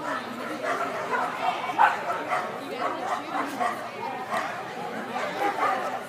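People talking around the ring, with a dog barking over the chatter.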